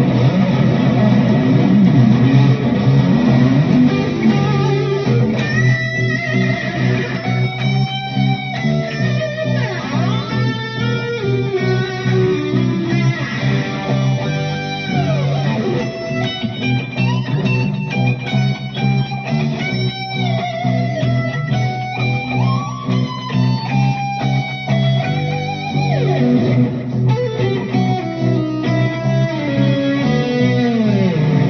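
Electric guitar, a Jackson Kelly with a Floyd Rose tremolo, played through a pedalboard with delay: melodic lead lines with bends, vibrato and falling pitch glides over a sustained low note layer.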